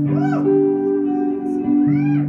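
Live band music: a held chord with two short swooping tones that rise and fall in pitch, one just at the start and one near the end.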